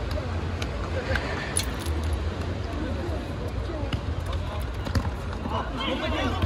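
Scattered voices calling out across an outdoor futsal court, with sharp knocks of the ball being kicked and a steady low rumble underneath.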